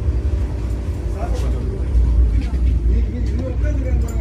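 Steady low rumble in the driver's cab of a Vande Bharat electric train, with faint voices talking.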